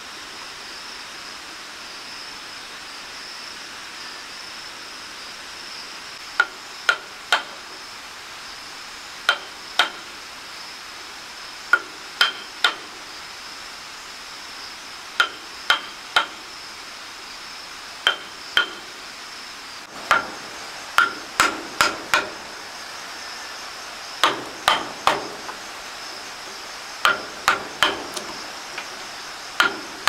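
Hammer driving nails into wood with sharp strikes in quick groups of two or three, starting about six seconds in and coming more often in the last third.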